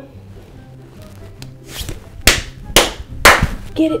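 Three loud, sharp hand claps about half a second apart, close enough to a clip-on microphone to come through as hard, clipping-level cracks, with a fainter one just before. Light background music runs underneath.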